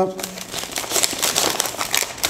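Sheets of folded paper crinkling and rustling as they are unfolded and handled, a dense run of quick crackles.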